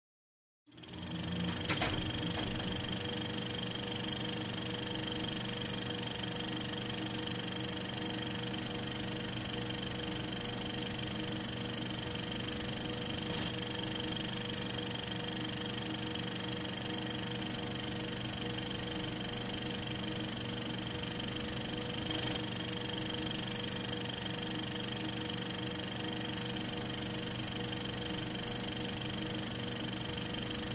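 9.5mm film projector running, a steady whirring hum that starts just under a second in, with a few faint clicks.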